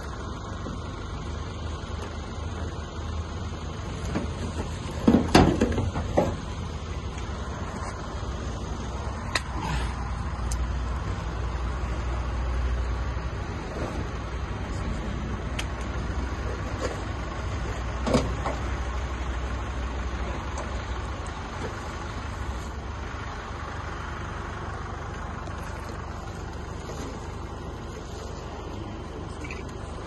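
Knocks and rattles as a car's cut-open roof and body are handled, over a steady low rumble. The loudest run of knocks comes about five seconds in, with single sharp knocks near ten and eighteen seconds in.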